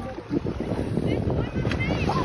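Wind buffeting the microphone over water sloshing around the boats, with a few short high-pitched cries near the end.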